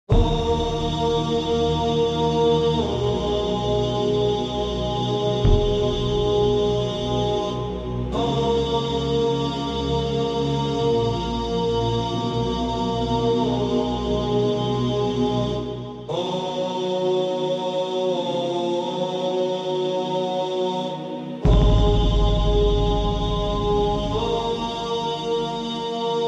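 Slow intro music: a chant-like drone of long held tones over a deep bass, with the chord shifting every few seconds and a fuller, louder section starting about three-quarters of the way in.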